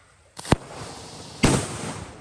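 A medium-size homemade paper-bundle firecracker wrapped in cashier roll paper goes off: a sharp bang about half a second in, a rushing hiss, then a second sharp bang about a second later, with hiss trailing after.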